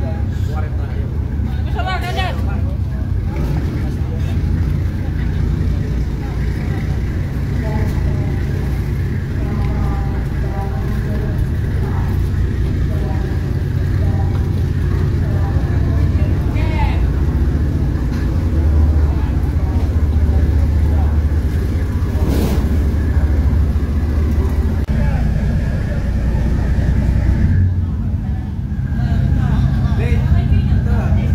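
Diesel engines of a fast passenger ferry running with a steady low rumble as it comes alongside, loudest in the middle.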